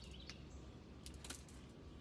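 Quiet car-cabin room tone: a low steady hum with a few faint clicks a little past the middle.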